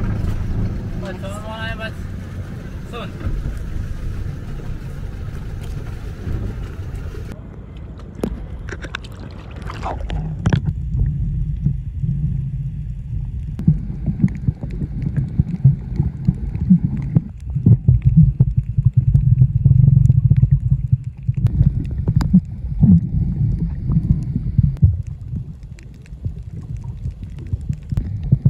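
Muffled sound of a camera held underwater while snorkeling over a coral reef: a low rumble of moving water with irregular knocks and sloshes. Above-water sound from a small boat comes first for several seconds, and the high sounds drop away once the camera is under the surface.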